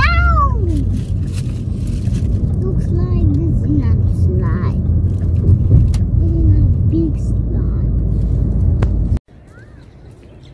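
Wind buffeting the microphone: a loud, fluctuating low rumble. A high, gliding voice sounds at the start and brief voices come under the rumble. It all cuts off abruptly about nine seconds in.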